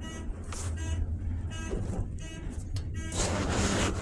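ThyssenKrupp elevator car in motion, with a steady low hum throughout and several short pitched tones spread through it. A rush of hiss comes in near the end.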